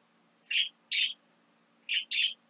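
A small bird chirping: short high chirps in two pairs, about half a second apart, the last one running past the end.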